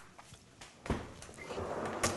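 A single sharp knock about a second in, then faint sliding noise as a pull-out spice rack drawer beside the range is opened.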